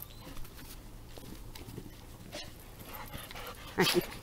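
Golden retriever panting close to the microphone, with faint irregular snuffs and rustles. Near the end comes a louder short pitched sound, a brief vocal call.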